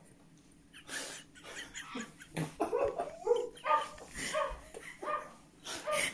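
A woman's stifled laughter behind her hand: short pitched bursts with puffs of breath through the nose, coming in a string after a near-silent first second.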